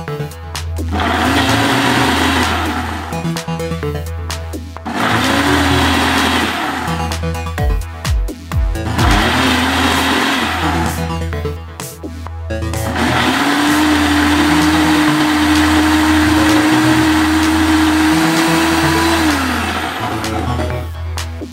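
Nutri Ninja Auto-iQ blender blending a milkshake in a programmed pulse pattern: three short spins of a second or two with pauses between, then one long run of about six seconds. The motor pitch rises as each spin starts and falls as it stops, over background music with a steady beat.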